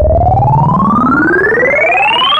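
Synth1 software synthesizer playing its "SpaceShip" preset: a loud sci-fi effect tone rising steadily in pitch like a siren. Two layers glide upward together, the lower one climbing faster than the upper.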